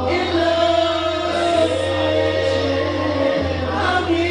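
Karaoke singing: a man's voice through a microphone and PA over a backing track with heavy bass, holding long notes.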